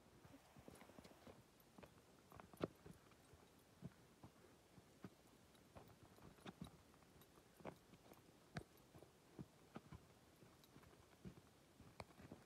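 Faint, irregular crunching footsteps of a person and a dog walking on packed snow.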